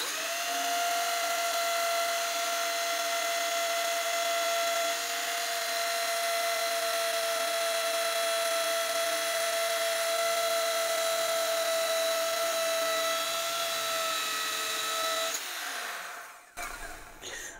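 Corded electric drill running at steady speed as it bores a hole into a block of hard wood, a steady motor whine. Near the end it is switched off and its pitch falls as it winds down.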